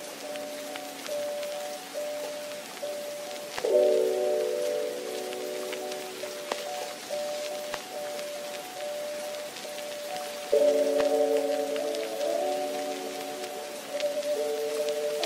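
Soft background music of sustained keyboard chords, with a new chord struck about four seconds in and another near eleven seconds, each fading slowly, over a faint steady hiss with fine crackles like rain.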